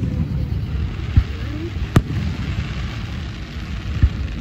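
Aerial fireworks shells bursting overhead: two bangs, about a second and two seconds in, the second sharper, over a steady low rumble.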